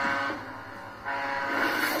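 A sustained, horn-like chord from a movie trailer's soundtrack, heard through a laptop's speaker. It fades shortly after the start and swells back in about a second in.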